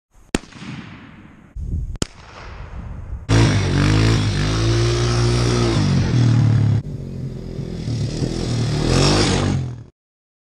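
Two rifle shots about a second and a half apart, each with a short echo. Then a small dirt bike engine revs hard past for about three and a half seconds, and after a cut more revving swells near the end and cuts off suddenly.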